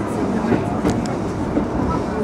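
An E531-series electric commuter train running along a station platform, heard from inside the car: a steady rumble with a couple of brief rail clicks.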